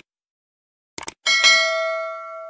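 Subscribe-button animation sound effects: two quick clicks about a second in, then a bell ding that rings on and slowly fades.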